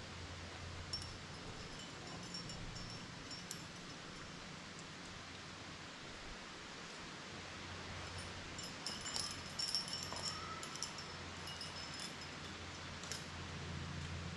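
Light metallic clinks and jingles of climbing carabiners and quickdraws, in two clusters about a second in and again from about eight to thirteen seconds, over a steady low outdoor hum.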